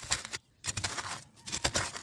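Fingers scratching and poking into hard, dry garden soil to make small seed holes, heard as several short scrapes with brief pauses between them.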